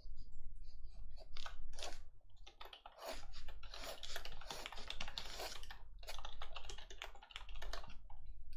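Graphite pencil scratching on sketchbook paper in quick, repeated short strokes, as in shading, busiest from about three to six seconds in with brief pauses between runs.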